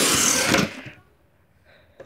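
Cardboard shipping-box flap being pulled open by hand: a short scraping rustle of cardboard lasting well under a second.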